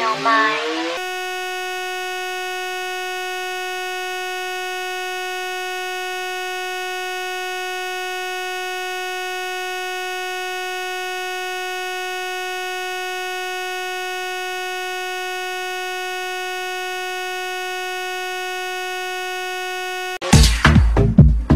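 A single steady, electronic buzzing tone, one unchanging pitch rich in overtones, held at constant loudness for about nineteen seconds. It takes over from rising, sweeping music about a second in and cuts off at the very end as the music resumes.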